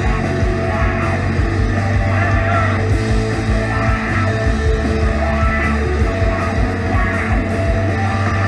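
Rock band playing live at full volume: electric guitars, bass guitar and a drum kit keeping a steady beat with cymbal hits.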